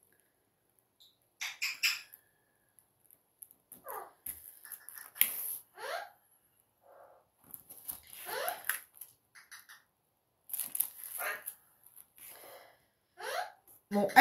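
A dog whining several times in short calls that slide up and down in pitch, mixed with the crackle of adhesive tape being handled and pressed down on a canvas.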